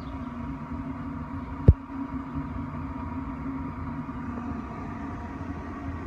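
Steady hum of a Cabela's pellet smoker's fan running while the smoker holds its cooking temperature. A single sharp thump comes about two seconds in.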